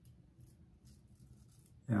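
Faint, short scraping strokes of a OneBlade single-edge safety razor cutting stubble through lather on a third, against-the-grain pass; the razor is tugging, a sign that hair is still left to cut. A man's voice starts at the very end.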